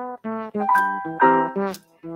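A voice singing or speaking through a microphone over live electric keyboard music, with a few notes held steady near the middle.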